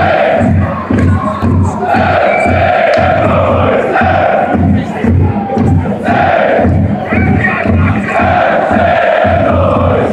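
Football crowd chanting loudly in unison, with a steady low beat pulsing under the voices.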